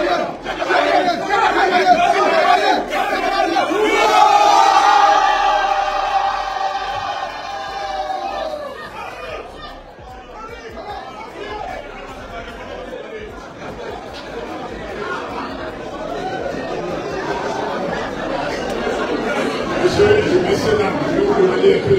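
Groomsmen chanting together loudly in a hall, a chant urging the bride to say yes; about eight seconds in the chant dies down into the murmur of the wedding crowd.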